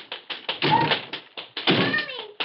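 A child crying, with short gasping, breathy sobs heard twice.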